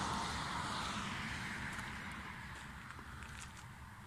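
A passing road vehicle's noise, a broad hiss over a low rumble, fading steadily away.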